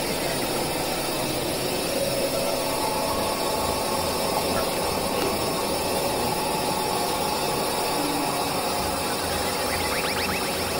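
A dense, steady wash of noise with faint held tones running through it: an experimental noise drone made from several music tracks layered and processed together.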